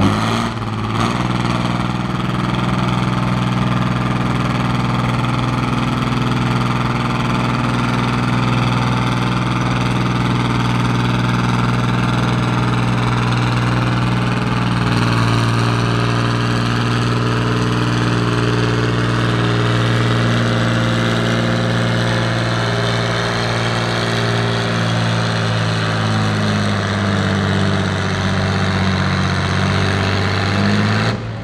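A John Deere diesel farm tractor's engine pulling hard under heavy load, its note held steady. A high whine rises slowly through the pull.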